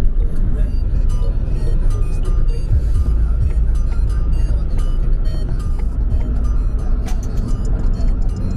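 Steady low road and engine rumble inside a moving car's cabin, under music.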